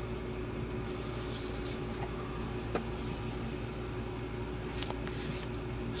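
A steady background hum with a constant tone, under a few faint rustles and soft taps of an old paper instruction booklet being picked up and handled.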